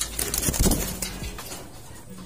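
Domestic racing pigeons cooing in a loft, with a brief scuffle in the first second as one bird is caught by hand.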